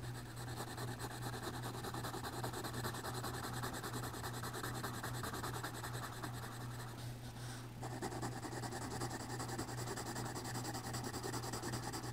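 Yellow coloured pencil scratching and rubbing continuously on drawing-pad paper as it colours an area in small circles, over a steady low hum.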